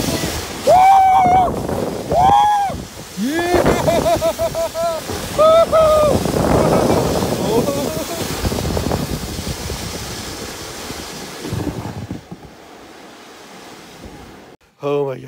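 A rider yells and whoops in about four loud bursts while sliding down a snow-tubing run, over the rushing of the tube on the snow and wind on the microphone. The rushing fades as the tube slows near the end.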